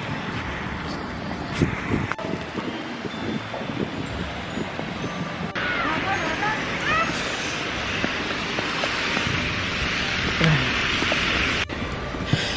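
Outdoor street ambience in the snow: a steady rushing noise of wind and traffic with a few brief voices. About halfway through, the noise cuts abruptly to a louder, brighter rush.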